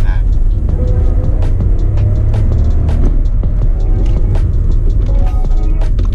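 VW Taigun 1.0 TSI three-cylinder turbo engine, with a Stage 2 remap and performance downpipe, pulling hard under acceleration as the revs climb from about 3,000 to 4,000 rpm, heard from inside the cabin. Hip-hop music plays over it.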